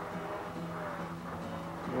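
A steady low hum made of a few held tones, unchanging in pitch and level.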